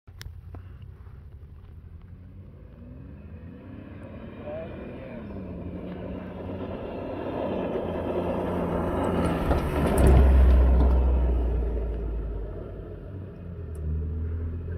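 Ford Bronco's engine revving hard as the truck speeds across soft sand dunes, its pitch climbing and then holding. It grows much louder and passes close about ten seconds in with a heavy low rumble, then fades away.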